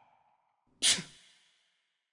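A single loud, sharp sigh about a second in, a breathy exhale that fades over about half a second, as the tail of the music dies away at the start.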